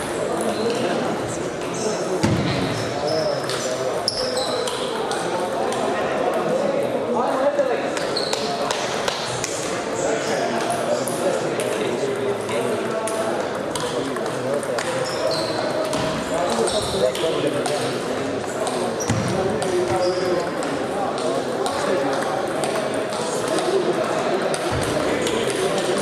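Table tennis balls clicking on bats and tables at several tables at once, in irregular light ticks, over a steady murmur of voices in a large hall.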